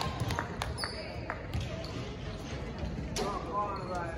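A volleyball bouncing a few times on a hardwood gym floor, with scattered footsteps and faint voices in the hall.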